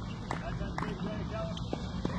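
Faint distant voices over a low, steady rumble, with scattered light knocks.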